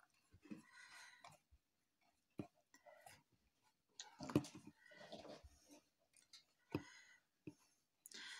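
Faint handling sounds: a brush spreading PVA glue over mesh fabric on a cardboard box, with soft rustles and a few light taps.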